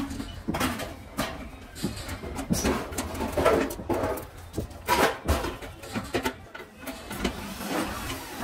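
Screwdriver scraping and clicking against a cast aluminium gas burner ring and the stainless steel stove top, in irregular short knocks and scrapes.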